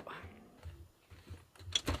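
Faint thumps of movement, then a few sharp clicks near the end as a wooden cabinet door is opened.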